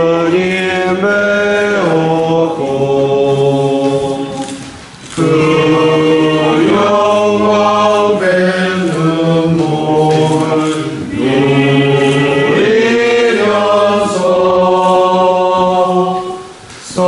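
A congregation singing a slow hymn at communion in phrases of held notes, with a short break about five seconds in.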